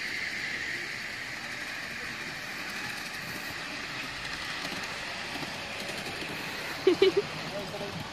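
Ride-on miniature railway train, a small locomotive and passenger car, running along the track as it approaches and passes, a steady running noise. About seven seconds in, three short loud sounds come in quick succession.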